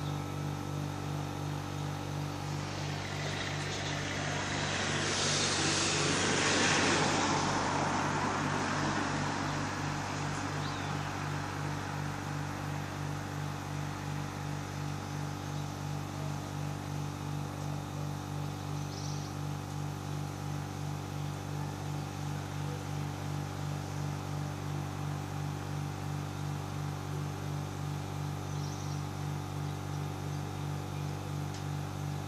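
A single car passing on the street below, its tyre and engine noise swelling over a few seconds and fading away. Under it runs a steady low hum that pulses evenly throughout.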